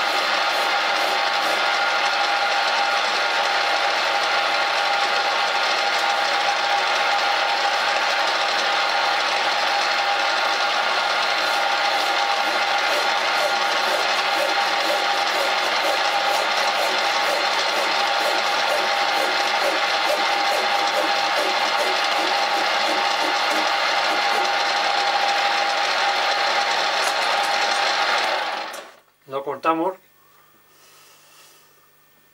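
Belt-driven metal lathe running steadily while turning a shotgun action's central axle: a continuous mechanical whine carrying a few constant tones. It cuts off abruptly near the end, followed by a brief short sound.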